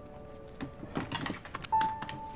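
Soft background music: held notes fade away, then a new bright held note comes in near the end. A few faint rustles and light knocks sound about a second in.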